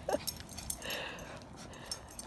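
A small dog gives a short, faint whine about a second in, over light scuffling and clicks as two dogs tussle over a plush toy.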